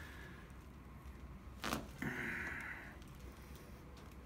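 A single short crack about a second and a half in, a spinal joint popping under a hand-over-hand chiropractic thrust on the lower back, followed by about a second of soft, breathy hiss.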